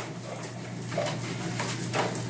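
English bulldog mother and puppies playing, with a short dog vocal sound about halfway through and another near the end, over a steady low hum.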